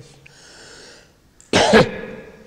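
A person coughs once, a short loud cough about one and a half seconds in.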